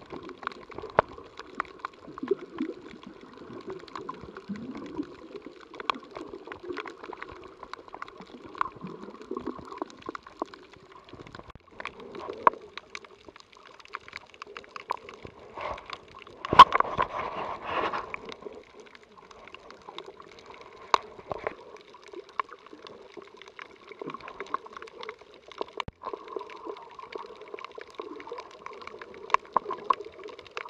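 Underwater ambience picked up by an action camera held below the surface over a coral reef: muffled water movement with many scattered sharp clicks and crackles. A louder rush of water sounds for about a second and a half a little past the middle.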